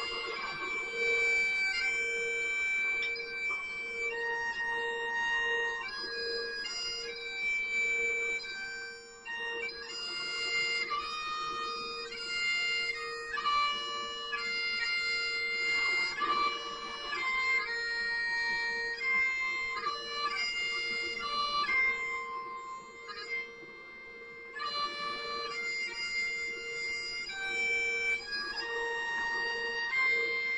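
Highland bagpipes playing a slow tune over a steady drone, with a brief break in the sound about nine seconds in.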